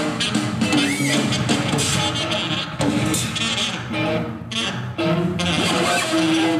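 Live band playing, with drum kit and guitar.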